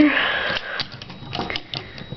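Small clicks and rubbing of a Transformers Animated Swindle deluxe figure's plastic parts as it is handled and its pieces are settled into place, with a short rustle near the start and scattered light clicks after.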